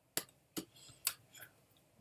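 A series of sharp, faint clicks, about four in two seconds at uneven spacing.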